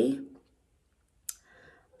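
A woman's speech trails off into a pause, broken by a single short, sharp click a little past a second in.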